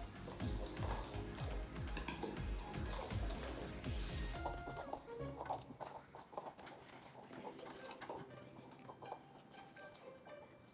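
Background music plays for about five seconds, then stops. Throughout, light clicks and taps sound as paper cups are set down on a table and on top of one another, built into pyramids in a stacking race.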